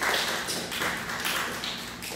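Handheld microphone being fitted into its stand clip: a series of taps and rubbing handling noises, roughly two or three a second.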